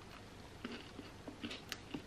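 Faint crunching of a person biting into and chewing a home-baked gingerbread man biscuit, a few soft crunches from about half a second in.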